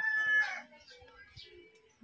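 Rooster crowing, its long held final note ending about half a second in; after it only faint scattered sounds.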